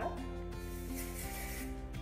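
A hiss of aerosol hair spray being sprayed onto hair, starting about half a second in and lasting over a second, over steady background music.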